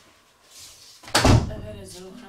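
A single loud thump about a second in, followed by a short wordless voice.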